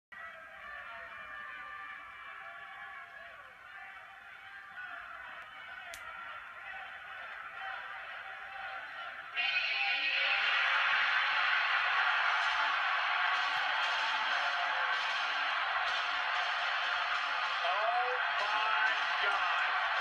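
Arena crowd noise from a wrestling broadcast, heard through a TV speaker, that jumps suddenly about nine seconds in to loud, steady cheering.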